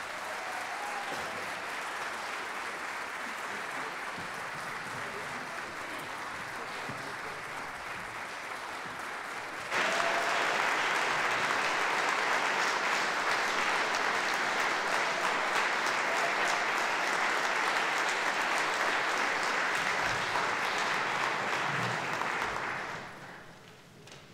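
Audience applauding in a concert hall, growing suddenly louder about ten seconds in and fading out near the end.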